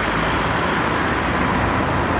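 Steady street traffic: cars and other vehicles passing, an even, continuous wash of engine and tyre noise.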